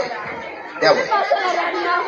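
Speech only: a man talking, with other voices chattering.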